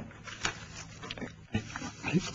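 Loose sheets of paper being handled and shuffled on a desk: a few soft rustles and light ticks.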